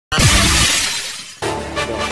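A DJ crash sound effect opens the track: a sudden glass-shatter-like burst over a deep bass hit that slides down in pitch, fading over about a second. It cuts off about a second and a half in, and electronic trance music comes in.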